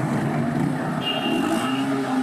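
Steady outdoor street background of road traffic, with a thin high tone for about a second near the middle.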